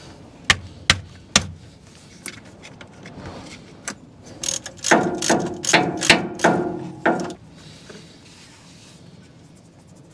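A few sharp metallic clicks, then about two and a half seconds of rapid ratcheting clicks with a metallic ring, starting about five seconds in: a ratchet spanner tightening the nut of the new batteries' hold-down bracket.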